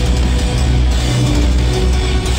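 Metalcore band playing live at full volume: heavy, guitar-driven music with a dense, steady low end, heard from the crowd in a club.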